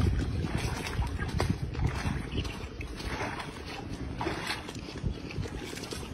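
Wind buffeting the microphone, with feet splashing and sloshing through shallow muddy floodwater.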